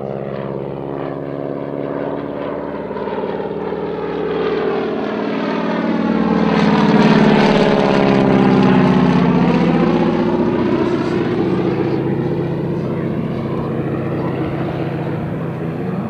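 A de Havilland Canada DHC-2 Beaver's nine-cylinder Pratt & Whitney R-985 Wasp Junior radial engine and propeller flying low past. It grows louder, is loudest about seven to nine seconds in as the aircraft passes overhead, then drops in pitch and fades a little as it moves away.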